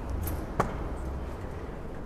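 A single sharp tap about half a second in, over a steady low rumble of background noise.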